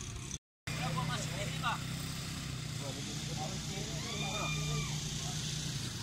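Small quad ATV engine running steadily across the field, a low even hum heard from a distance, with faint voices in the background.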